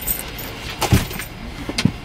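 Handling noise in a parked car's cabin: a bag's metal chain strap rattling as it is moved, with two dull thumps about a second apart.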